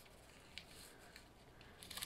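Near silence, with a few faint snips of scissors cutting through thin metallic hot foil.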